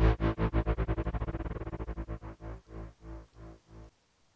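Synthesizer note from Ableton's Operator, through a fully wet reverb, chopped on and off by Ableton's Auto Pan set to full amount: rapid pulses that slow down and fade out over about four seconds as the Auto Pan rate is automated.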